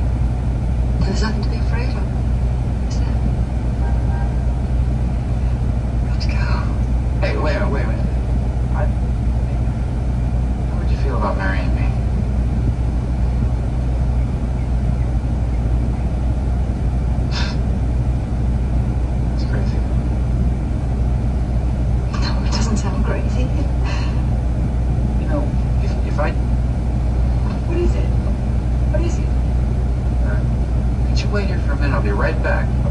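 Steady low drone of an idling diesel truck engine, under short spurts of film dialogue from a screen every few seconds.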